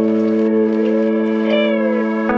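Background music of steady held chords, with one note gliding up and back down in the middle.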